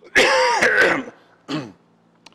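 A man coughing and clearing his throat: one long rasping cough, then a short second one about a second and a half in.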